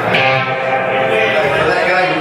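Electric guitar strummed just after the start and left ringing through the amplifier, with people talking in the room.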